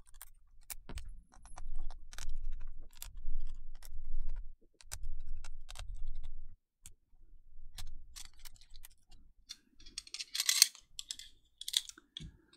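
Small sharp clicks and taps of metal tools and fingers on a MacBook Air's internals as a cable connector is pried off and the logic board is freed and lifted out, with low handling rumble and a brief scrape about ten seconds in.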